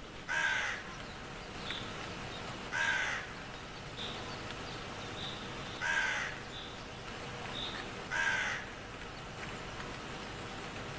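Crow cawing four times, each caw about half a second long and falling slightly in pitch, a few seconds apart.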